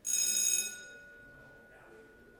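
A bell-like chime rings once, loud and high, held for about half a second and then dying away. One clear note lingers faintly afterwards.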